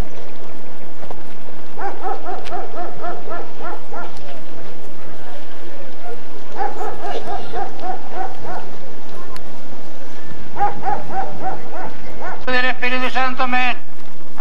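An animal calling in three runs of short, evenly spaced calls, about three a second, with pauses between the runs. Near the end a louder person's voice comes in, holding a steady pitch.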